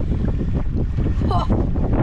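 Wind buffeting the camera's microphone, a loud, gusting low rumble.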